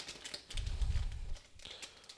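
Foil trading-card pack wrapper crinkling as it is handled, with a low rumble about half a second in.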